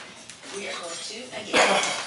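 Speech from a cooking programme talking through a recipe. About one and a half seconds in, a short, loud noise cuts across it and is the loudest thing heard.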